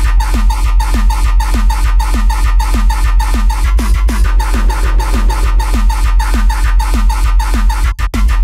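Hardtekk/uptempo electronic dance track: a fast, steady run of distorted kick drums, each dropping quickly in pitch, over a continuous deep bass.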